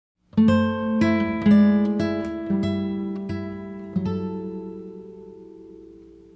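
Background music of plucked acoustic guitar: single notes and chords struck about every half second, starting just after the opening. A last chord about four seconds in rings on and slowly fades away.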